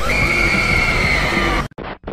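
A woman's shrill, high-pitched scream held on one steady pitch for about a second and a half, then cut off abruptly.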